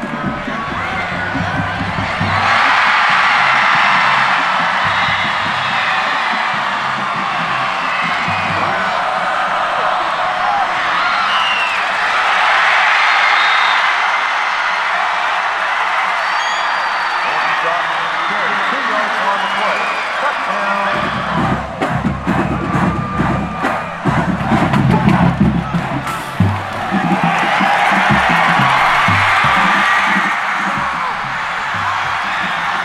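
Football stadium crowd cheering in long swells, mixed with background music. About two-thirds of the way through, the cheering drops back for several seconds and rapid sharp hits over a deep bass come up. The cheering returns near the end.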